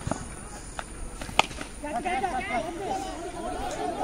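Faint, distant voices of cricket players chatting and calling on the field, with a few sharp clicks, the loudest about one and a half seconds in.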